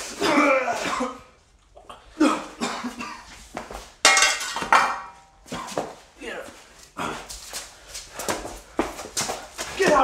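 Men yelling and shouting without clear words during a staged scuffle, with several sharp knocks and smacks of the fight.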